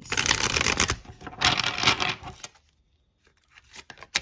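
A tarot deck being shuffled by hand, in two bursts of about a second each. The shuffling stops about halfway through, leaving only a few faint taps of cards.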